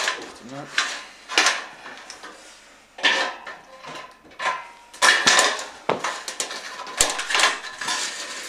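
Tin snips cutting a thin metal wall batten: a run of sharp snips and metallic clanks as the strip is cut and handled, the sheet metal ringing briefly after several of them.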